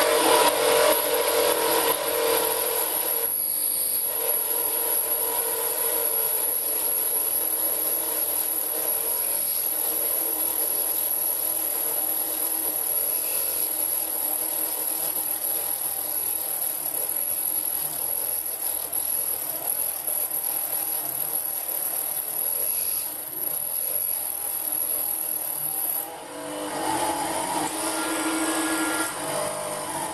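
A belt-driven drilling spindle powered by a small 775 DC motor runs a 6.3 mm drill into steel, making a steady cutting and rubbing noise over the motor's whine. A drill this size is about the limit of the motor in solid steel. Near the end the sound dips briefly, then changes tone.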